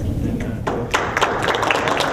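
A small crowd of dinner guests applauding, the clapping breaking out about half a second in, with a few voices mixed in.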